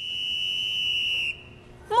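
A single steady, high-pitched electronic-sounding tone lasting over a second, then cutting off suddenly.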